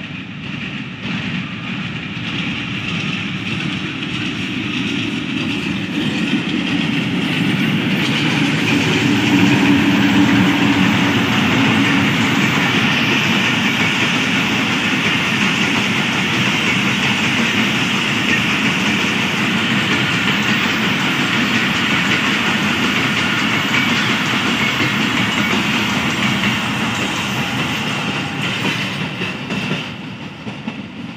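Pakistan Railways AGE30 diesel locomotive 6009 hauling a passenger train past at speed: its engine sound grows as it approaches and is loudest about ten seconds in. The coaches' wheels then run past steadily on the rails, and the sound falls away near the end.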